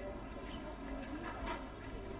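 Quiet room tone in a hall: a faint steady low hum under faint background noise.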